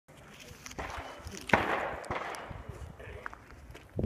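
A few gunshots, the loudest about a second and a half in with a short echo after it. Speech is faintly heard between them.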